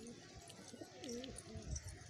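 Domestic pigeons cooing softly. One wavering coo, rising and falling in pitch, comes about a second in.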